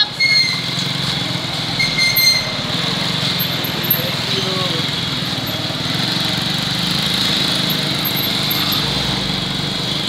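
Small motorcycle engines running steadily at low speed close by. Two short high beeps come in the first couple of seconds.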